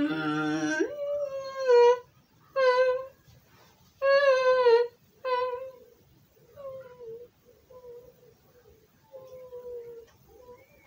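A child humming a run of short held notes at much the same pitch, the first one starting lower and sliding up about a second in. The notes are loud for the first five seconds and softer after that.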